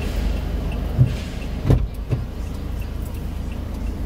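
A car's engine idling with a steady low rumble, heard from inside the cabin, with a few short knocks about one and two seconds in.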